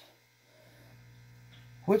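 Faint steady electrical hum in a near-silent pause, with speech starting near the end.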